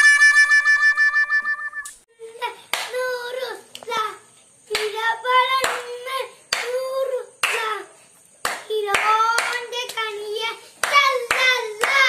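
A short burst of music with a held, pulsing tone that stops suddenly about two seconds in. After it come children's high voices in short bursts, with sharp hand claps or slaps between them.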